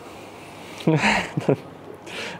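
A man's brief chuckle: two short breathy voiced bursts about a second in, after a second of quiet room tone.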